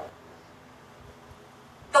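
A pause in a man's spoken narration: only faint, steady room tone, with his voice trailing off at the start and resuming near the end.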